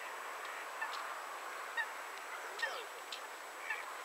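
Waterfowl calling: four short, high calls about a second apart, one with a falling pitch, over a steady background hiss.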